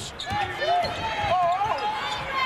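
A basketball being dribbled on a hardwood court, under steady arena crowd noise and a wavering voice that rises and falls.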